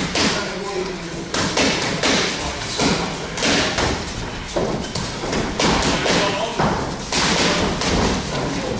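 Boxing gloves punching focus pads, a series of sharp thuds and slaps at an uneven pace, sometimes in quick pairs.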